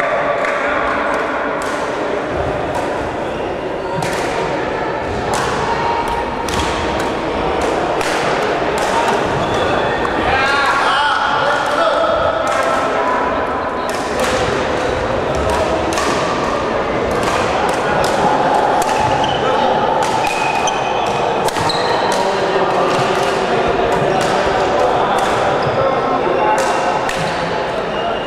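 Overlapping chatter of many people in a large sports hall, with frequent sharp cracks of badminton rackets striking shuttlecocks on the surrounding courts, coming at irregular intervals.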